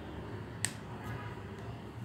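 A single sharp click about two-thirds of a second in, over a faint steady low hum.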